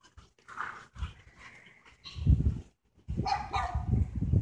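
Dutch shepherd barking in a few short, separate barks, the strongest a little past halfway and another near the end.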